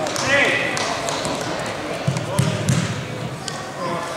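Men's voices shouting and talking in a large sports hall, with a few dull thuds about two seconds in.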